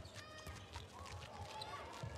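Indoor court shoes squeaking on a handball court floor: short high chirps scattered through, over low thuds of feet and ball.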